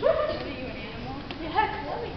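A young actor's voice giving two short, high, dog-like yelping cries, about a second and a half apart.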